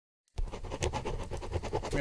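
Pen scratching on paper in quick strokes, as if handwriting, starting about a third of a second in.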